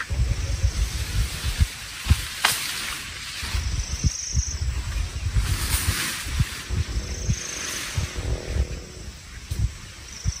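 Outdoor ambience among trees: gusting wind buffeting the microphone with leaves rustling, and a few short, high-pitched trills about 4 and 7 seconds in.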